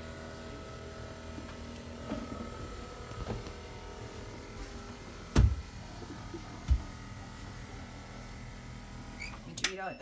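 Electric stairlift motor running steadily with a steady whine as the chair travels down the stair rail. Two sharp thumps come about five and a half and seven seconds in.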